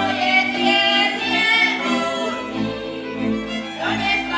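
Two women singing a Slovak folk song from the Horehronie region, accompanied by a folk string band with fiddle.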